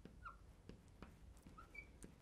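Faint squeaks and light taps of a fluorescent marker writing on a glass lightboard: a few short squeals from the tip on the glass, mixed with soft clicks.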